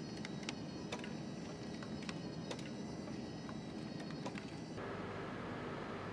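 Laboratory equipment ambience: irregular sharp clicks over a steady high-pitched whine. About five seconds in, the sound cuts abruptly to a steadier machine hum.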